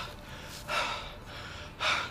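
A man taking two loud, breathy gasps, the first under a second in and the second near the end, in pain from pepper spray in his eyes.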